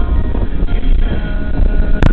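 Steady low rumble of road and engine noise heard inside a moving car's cabin.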